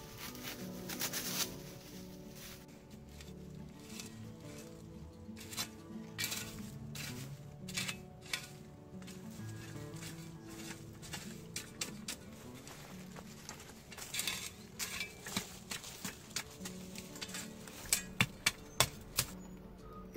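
Background music playing throughout, over repeated scraping and knocking of a shovel working loose garden soil into a small hole. A quick run of sharper, louder knocks comes near the end.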